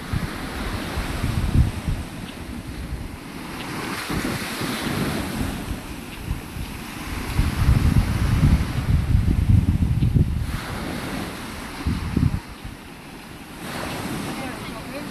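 Gentle surf washing onto a sand beach, with wind buffeting the phone's microphone in irregular gusts, heaviest a little past the middle.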